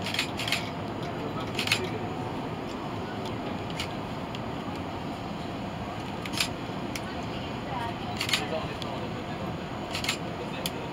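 Steady rushing hum of the flight-deck ventilation and equipment cooling fans in a parked Airbus A380 with its engines shut down, broken by a handful of sharp clicks.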